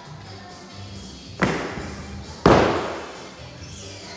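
Two hard thuds about a second apart, the second louder, from feet landing on a wooden lifting platform while splitting into a jerk stance, over background music.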